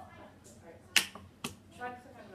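Two sharp clicks about half a second apart, the first much the louder.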